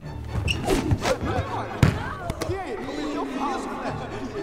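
A few sharp thuds and slaps, the loudest a little before the middle, as hands grab at a basketball, with wordless voices of players and onlookers over background film music.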